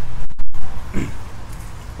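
Hand cultivator tines scratching through loose, freshly turned garden soil over a low rumble, with a short grunt-like voice sound about a second in.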